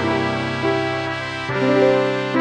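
MIDI rendering of a women's four-part choral score, a note-learning track for the Alto I part: synthesized sustained notes over chords, with new notes coming in a few times.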